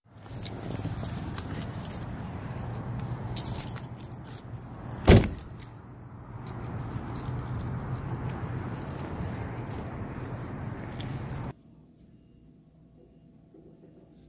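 A car door opening and then shut with a single loud thump about five seconds in, with keys jangling and footsteps on concrete over steady outdoor noise. Near the end the sound cuts off abruptly to quiet room tone.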